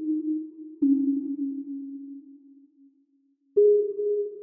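Slow background music of single held notes, each starting sharply and fading away. A lower note enters about a second in and dies out, then after a brief pause a higher note begins near the end.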